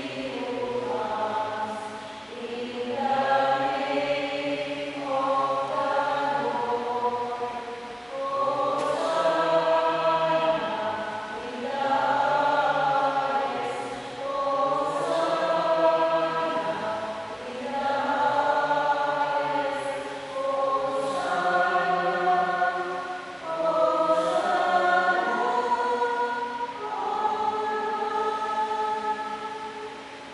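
A church choir singing a slow hymn in long held notes, phrase after phrase, trailing off near the end.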